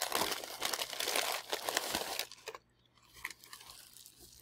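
Crumpled tissue paper crinkling and rustling as it is handled and pulled aside, stopping a little after two seconds in, followed by a few faint ticks.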